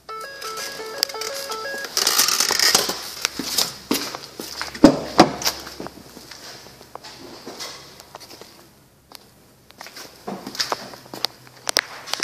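A 2011 Ford F-150 instrument-cluster warning chime: a short run of electronic tones stepping up and down, lasting about two seconds, while the cluster shows a Low Oil Pressure warning with the engine not running. Then rustling handling noise, with two sharp knocks about five seconds in.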